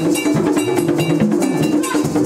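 Vodou ceremony drumming: tall hand drums with a metal bell struck in a fast, steady rhythm.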